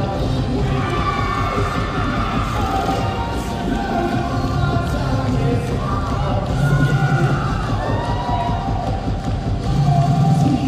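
Competition cheerleading routine music mix playing loud and continuous, with a crowd cheering over it.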